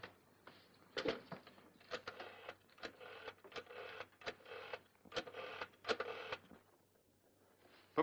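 Rotary telephone being dialled: seven digits in turn, each a short burst of whirring and clicking as the dial runs back, then quiet as the call connects.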